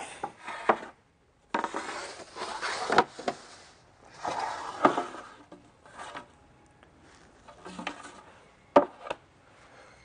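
Timber boards being slid out and shifted against one another, with two stretches of scraping and rubbing wood and a few sharp knocks of board on board, the loudest near the end.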